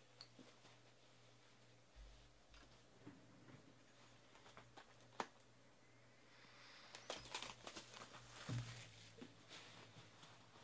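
Quiet handling of a cardboard trading-card hobby box: a few light clicks, then from about seven seconds in a short stretch of crinkling and tearing as the box's wrapping is opened, with a soft thump near the end.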